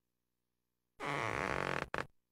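Cartoon sound effect of a chest swelling up like a balloon: a loud, low, rough blurt about a second long, starting about a second in, followed by a short second blip.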